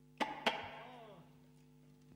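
Two sharp knocks on an acoustic guitar in quick succession as it is handled, its strings ringing briefly and fading within about a second, over a faint steady electrical hum.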